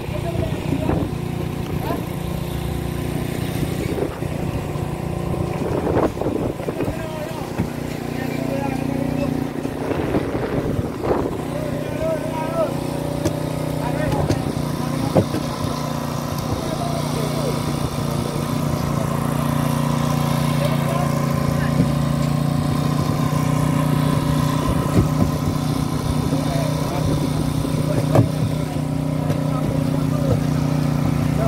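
A fishing boat's engine running with a steady drone, getting a little louder partway through, under the voices of crew calling out while the purse-seine net is hauled in.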